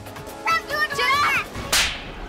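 A single hard slap across a child's face: a short, sharp crack near the end, after high wavering tones.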